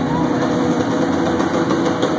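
A live rock band's amplified instruments in a hall, holding a loud, steady drone with no clear beat.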